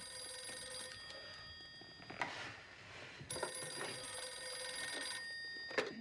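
Rotary desk telephone's bell ringing twice: the first ring dies away about two seconds in, and the second starts about a second later. The second ring is cut short near the end by a clunk as the handset is lifted.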